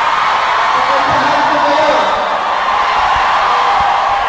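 A large crowd of many voices cheering and shouting, a steady loud roar with scattered whoops and yells.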